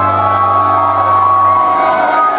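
Live punk rock band on stage holding a sustained chord over a low bass note that fades near the end, with the crowd cheering and shouting.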